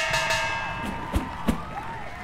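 Music sting for a boxing-style entrance: a sudden ringing hit that fades slowly, then two low drum-like thumps a little over a second in.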